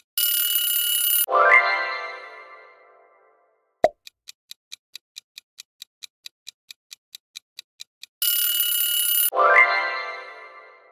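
Quiz countdown-timer sound effects: a clock ticking a little over three times a second ends in a ringing time's-up alarm of about a second. A short rising musical sting follows and fades over about two seconds. After a single pop the ticking starts again, and the ring and sting repeat about eight seconds in.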